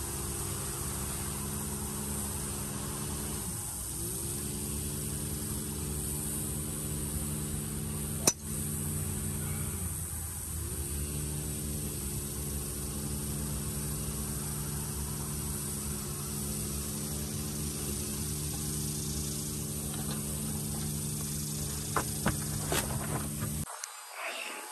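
A golf club strikes the ball once, a single sharp crack about eight seconds in. Under it runs a steady low engine-like hum that sags in pitch twice, and a few small clicks come near the end.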